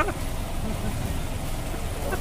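Street ambience: a low steady rumble of vehicle and road noise with people's voices. A short laugh comes right at the start, then only faint scattered voices.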